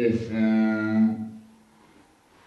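A person's voice holding one low, drawn-out note that trails off about a second and a half in.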